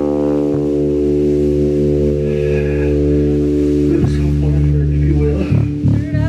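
Amplified electric guitar and bass guitar holding one sustained chord. It rings steadily for about five seconds, shifts slightly about four seconds in, and breaks off near the end.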